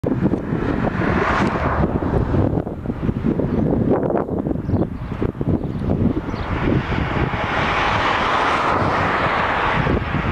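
Wind buffeting the microphone in uneven gusts, with a rushing noise that swells over the second half.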